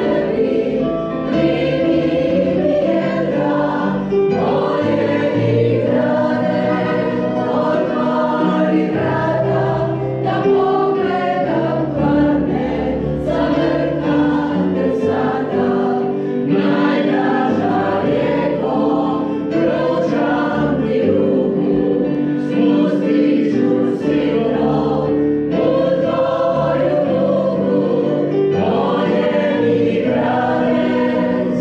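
Choral music: a choir singing held chords that change every second or so, without pause.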